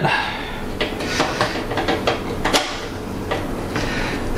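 Screwdriver working the rear thumbscrews of a Cooler Master Elite 110 mini-ITX case, its thin sheet-metal panel giving irregular metallic clicks and scrapes.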